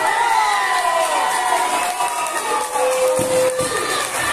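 Wrestling crowd shouting and cheering around the ring, many voices rising and falling over one another, with one voice holding a long call about three seconds in.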